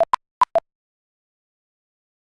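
Four short electronic blips within about half a second, at two pitches: lower, higher, a brief gap, higher, lower. It is a computer program's sound cue as it returns to its text-input prompt.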